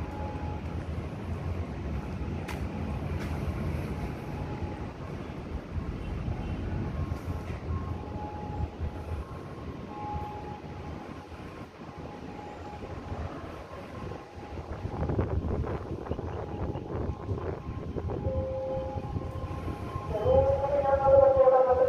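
Low, steady rumble of a commuter train running on the railway line out of sight, swelling louder for a couple of seconds about fifteen seconds in.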